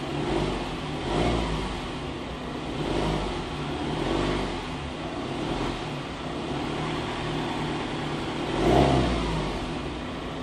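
Ford Transit minibus diesel engine running at idle. It swells in loudness several times as the revs rise and fall, most strongly near the end.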